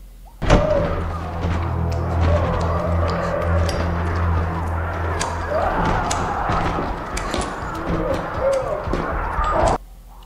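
Soundtrack of a tense TV drama scene: dark music over a low steady drone, with scattered sharp clicks and a few pitched, voice-like sounds, starting suddenly about half a second in and cutting off just before the end.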